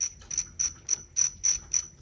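Steady mechanical ticking, about three and a half sharp clicks a second, from a small mechanism.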